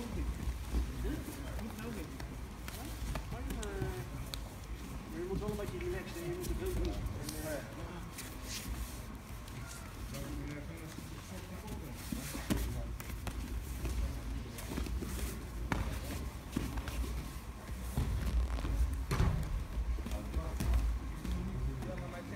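Indistinct voices murmuring around a grappling gym, with scuffs, shuffles and occasional thumps of bodies moving on the mats.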